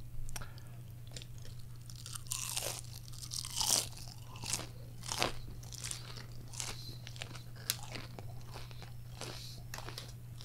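Battered onion rings being bitten and chewed close to a microphone: an irregular run of crisp crunches, thickest in the middle and thinning out near the end.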